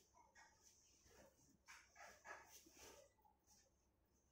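A few faint dog barks in quick succession, between about one and three seconds in, against a very quiet room.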